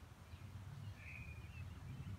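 Quiet outdoor ambience with a faint low rumble and a single short bird call about a second in.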